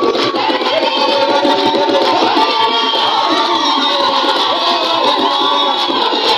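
A large choir singing in unison over a steady beat of large traditional drums, with sharp high percussion strokes throughout.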